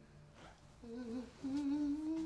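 A woman humming a tune to herself: a short wavering note about a second in, then a longer held note.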